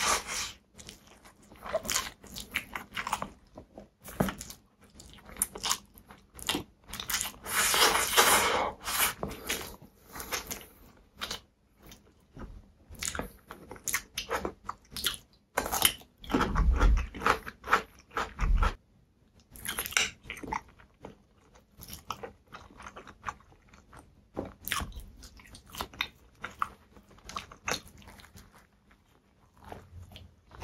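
Close-miked eating sounds: a man biting and chewing noodles, pickled cucumber and a sausage roll in pastry, with a quick run of small crisp clicks. There are louder, longer spells of crunching about eight seconds in and again around sixteen seconds, the second one as he bites into the pickle.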